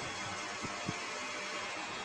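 Steady background hiss of the recording room and microphone, with no other clear event apart from a faint tick just before one second in.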